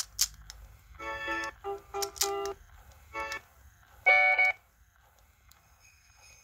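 Short snatches of electronic music from a small speaker driven by an MP3 player module: a few separate pitched notes and phrases between about one and four and a half seconds in, the last one loudest, then near quiet.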